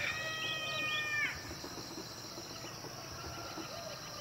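A rooster crowing: the held end of its call, which drops off a little over a second in. Under it runs a steady, high insect drone.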